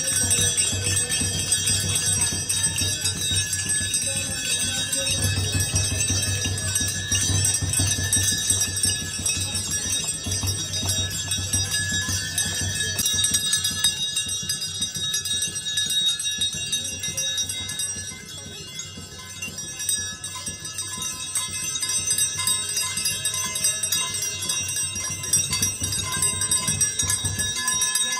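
Brass temple bells rung by hand, struck over and over by their clappers so that many high, bright tones overlap and ring on, easing briefly a little past the middle.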